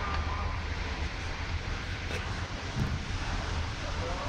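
Homemade spring rolling machine running: a steady mechanical drone with a low hum from its electric drive motor turning the threaded winding rod.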